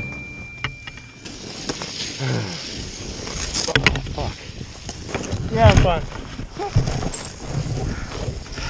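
A skier's wordless grunts and groans just after a fall in deep snow, with a short rising cry about five and a half seconds in. Under them run rustling of jacket and snow and wind noise on the chest-mounted camera's microphone.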